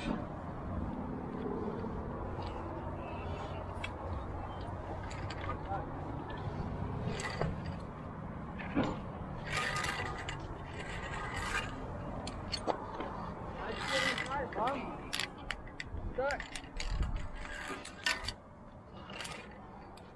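Via ferrata lanyard carabiners clinking and scraping against the steel safety cable and iron rungs: a run of sharp metallic clicks and clanks, some briefly ringing, coming thick from about a third of the way in, over a steady low rumble.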